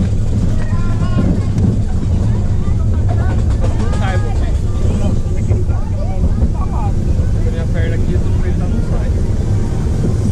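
Junior roller coaster car running on its track: a loud, steady low rumble, with voices over it.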